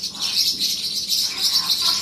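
Pet parrots chirping: a dense, steady high chatter of small-parrot calls.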